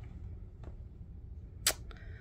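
Quiet handling of a glossy photo envelope and a leather-bound photo album, with a faint tick and then one sharp click near the end.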